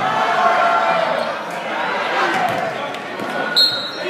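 Basketball game in a gym: spectators' voices throughout, with a ball bouncing on the hardwood. Near the end a short, shrill referee's whistle stops play.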